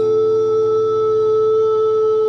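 Live singing with acoustic guitar: a voice holds one long steady note over the accompaniment.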